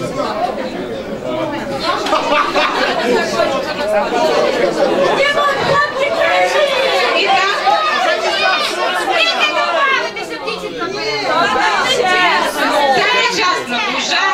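Many voices talking over one another in a large hall: a group chattering and calling out at once.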